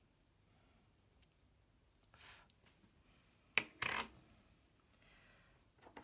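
Small plastic art supplies being handled and put down: a faint scrape about two seconds in, then a sharp click and a short clatter about three and a half seconds in.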